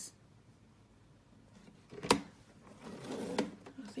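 One sharp plastic click about two seconds in, from a paper trimmer as red cardstock is handled and repositioned on it during scoring. The first two seconds are quiet.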